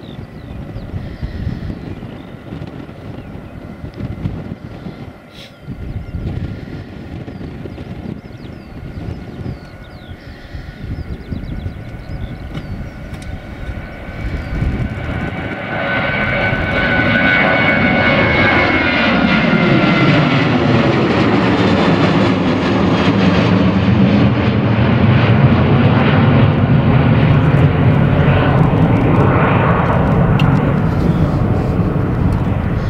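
Boeing 737-800's CFM56 turbofan engines at takeoff power. A distant, steady whine during the takeoff roll grows to a loud roar about halfway through as the jet climbs past close overhead. The roar's pitch sweeps down and back up as it passes, and it stays loud as the jet heads away.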